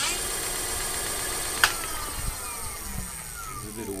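Electric-bike conversion motor whining as it spins the chain drive under no load, with a sharp click about a second and a half in. The whine then falls steadily in pitch as the motor winds down.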